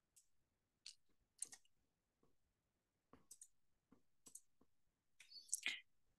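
Faint, scattered clicks of a computer mouse and keyboard, about a dozen in all, the loudest near the end.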